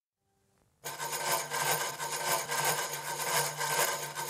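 Frame drums fitted with metal jingle rings played in a fast continuous jingling roll, starting suddenly about a second in, with a steady low tone beneath.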